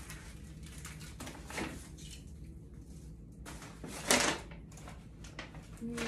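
Paper gift bags being handled and rustled as items are packed back in, with short crinkles, the loudest about four seconds in.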